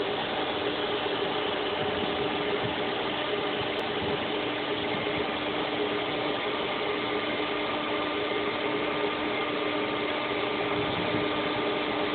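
Steady machinery hum with several constant tones running through it.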